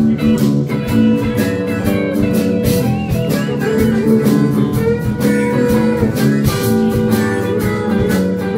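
Live blues band playing an instrumental passage: electric guitars and bass over a steady drum-kit beat, with harmonica. A wavering, bent high note comes about three seconds in.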